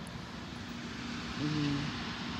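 Steady mechanical drone with a constant low hum underneath, like engines or machinery running in a truck yard. A short voice sound of steady pitch, like a brief hum, comes in about a second and a half in.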